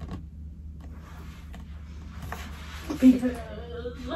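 Rustling and light knocks of things being handled and rummaged through, with a loud sigh about three seconds in, followed by a spoken word, over a steady low hum.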